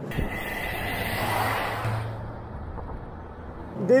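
Saab 9-3 2.0 Turbo's turbocharged four-cylinder engine and road noise as the car is driven hard through a bend, swelling for about a second and a half and then easing off, with a thin steady high tone in the first half.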